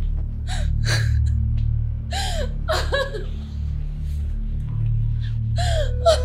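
A woman gasping and whimpering in a series of short breathy cries, about five of them, as she doubles over and sinks to the floor in pain, over a low steady music bed.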